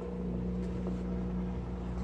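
A boat engine running, a steady low drone.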